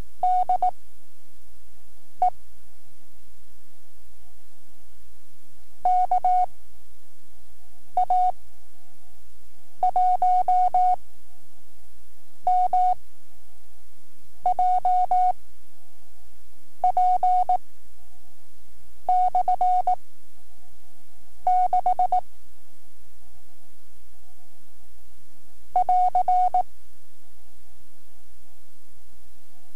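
Morse code on a code practice cassette: one steady mid-pitched beep keyed into characters. Each character is sent quickly and followed by a gap of a second or more, the slow five-words-per-minute pace of novice code test practice.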